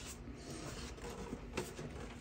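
Faint handling noise of a plastic Wi-Fi gateway and its cables being moved on a floor: light rubbing with a few small clicks, the clearest about one and a half seconds in.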